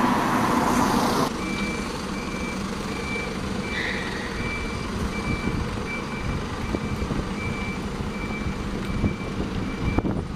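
A single-deck bus backing out of its stand, its reversing alarm giving a steady series of short, evenly spaced high beeps over the engine running. A louder close engine noise stops about a second in, and the beeping stops near the end.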